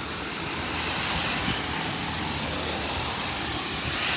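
Steady summer rain with wind rumbling on the microphone: a low, uneven rumble under an even hiss.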